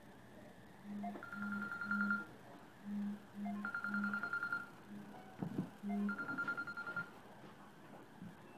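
A telephone ringtone sounding three times, about every two and a half seconds. Each ring is three short low beeps with a fast high trill.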